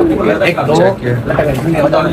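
Men's voices talking, loud and close, with no clear words.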